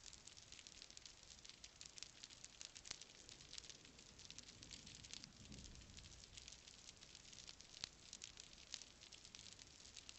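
Faint underwater crackle: a steady, irregular scatter of tiny clicks over a reef, with a faint low swell about five and a half seconds in.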